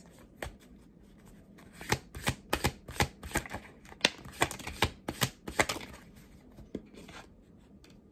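A deck of tarot cards being shuffled overhand, passed in packets from hand to hand: a run of quick, sharp card slaps starting about two seconds in and thinning out after about six seconds.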